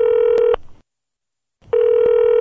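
Telephone ringing tone of a call ringing through: a steady, buzzy tone repeating in pulses about a second long with a second's pause between. One pulse ends about half a second in and the next starts near the end.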